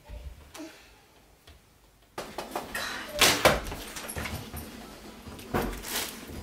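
A door being handled: a pair of sharp knocks and clatter about three seconds in and another knock near the end, over room noise that comes in suddenly about two seconds in.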